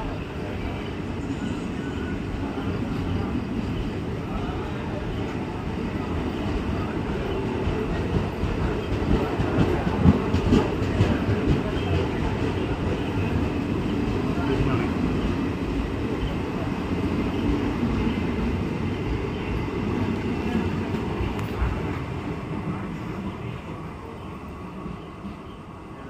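Indian Railways passenger coaches of the Aronai Express rolling past along the platform: a steady rumble of wheels on rail with clacks over the rail joints, loudest around the middle. It fades near the end as the last coach moves away.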